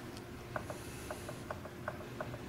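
A string of light clicks, about four a second, from a finger repeatedly pressing a button on a Fuling inverter's keypad, stepping the current setting down one step at a time.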